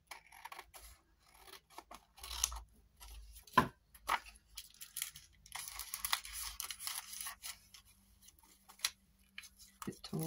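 Scissors snipping through a printed paper picture, with a sharp click about three and a half seconds in. Then a few seconds of paper rustling as the cut picture and a paper CD envelope are handled.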